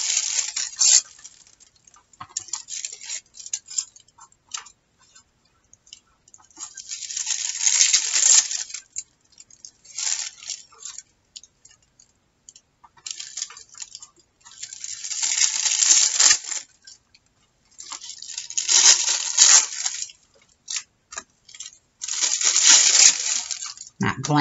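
Gold metallic paper being torn into small pieces by hand, heard as several separate bursts of crackly tearing and crinkling, each a second or two long, with quiet gaps between.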